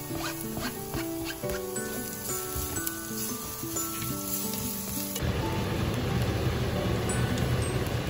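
Background music, a simple melody of held notes, for about the first five seconds; it then cuts out and a steady, louder sizzle of minced garlic frying in hot oil in a nonstick pan takes over.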